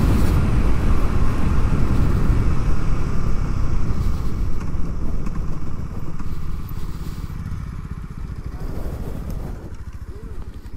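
Motorcycle engine running at road speed with rushing wind noise, dying down over the last few seconds as the bike slows to a stop.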